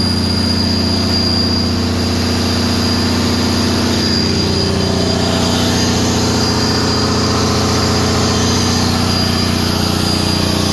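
John Deere 6068HF485 6.8-litre inline-six turbodiesel engine running at a steady speed, with a faint high whine above the engine note.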